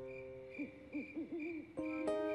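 Owl hooting as a cartoon night-time sound effect: a quick run of about five short hoots that bend up and down in pitch, over a faint high chirping repeated a few times a second. A held music chord fades out at the start, and soft music comes back in near the end.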